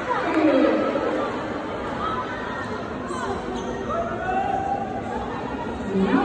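Indistinct chatter and shouted calls echoing in a large sports hall, with a falling shout at the start and a long drawn-out call about four seconds in.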